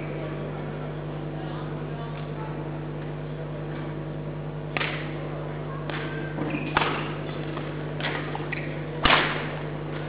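Badminton rackets striking a shuttlecock in a rally: about five sharp hits roughly a second apart, starting about halfway through, the last and loudest one near the end, over a steady hall hum.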